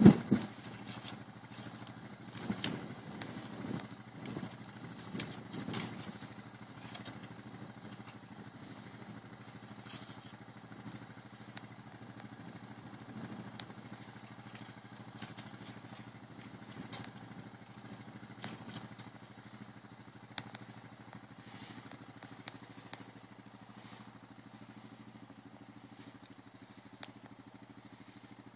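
Red stag's antlers knocking and scraping against a tree trunk as it rubs off the last of its velvet. There is a loud knock right at the start, a run of scrapes and knocks over the next six seconds, then scattered clicks, over a steady low hum.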